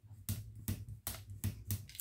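Scored card stock being folded along its crease lines and pressed down by hand: a quick, irregular run of short crackles and taps, several a second.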